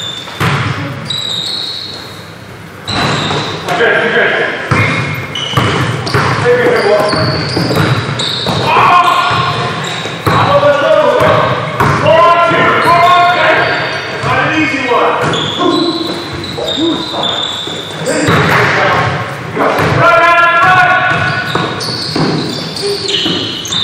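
A basketball bouncing on a hardwood gym floor as it is dribbled, with players' voices calling out, all echoing in a large gym.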